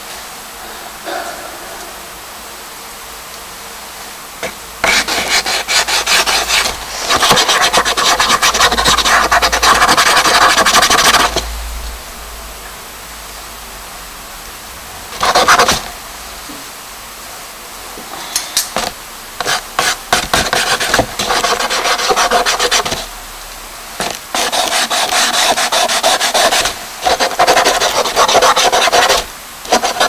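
Charcoal and a drawing tool scratching and rubbing over a paper page, in bursts of one to four seconds with short pauses between.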